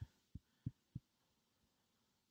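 Near silence broken by three faint, short, low thumps about a third of a second apart in the first second.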